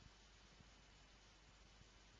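Near silence: only the faint hiss of the recording.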